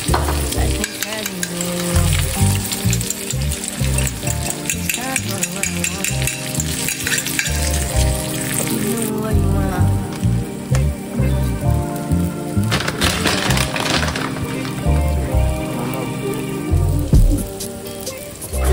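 Beaten egg and vegetables sizzling in a nonstick frying pan, the sizzle thinning out about halfway through. Background music with a steady bass beat plays throughout.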